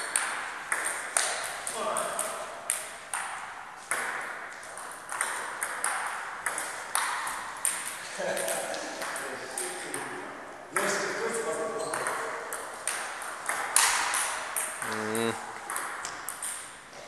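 Table tennis rallies: the celluloid ball clicking off paddles and the table in quick, uneven succession, about two hits a second, each with a short echo in a large hall.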